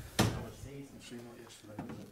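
Speech: a man says a word close to the microphone, followed by quieter talk from people further away.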